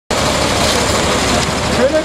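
Steady, loud motor-vehicle noise with people talking in the background.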